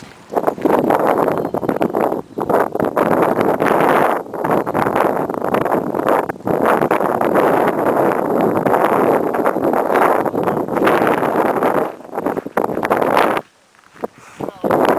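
Wind buffeting the camera microphone in loud, gusty rushes, dropping out briefly a few times.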